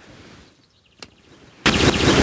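Hand pruning shears cutting a thin shoot of a weeping ornamental cherry: a faint click about a second in, then a loud burst of noise lasting just under a second near the end.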